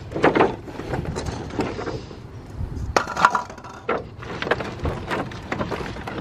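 Christmas ball ornaments clinking and knocking together as they are handled and loaded into a lantern, with the rustle and clatter of plastic packaging; a few sharper knocks come about three seconds in.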